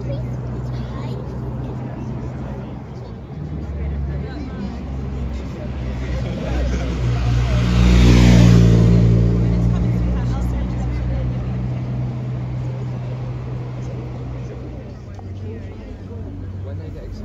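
A motor vehicle passes close by on the road, its engine and tyre noise swelling to a peak about halfway through and then fading, over the chatter of a waiting crowd.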